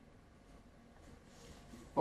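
Quiet room tone with a faint hiss during a pause in the talk. The lecturer's voice comes back in right at the end.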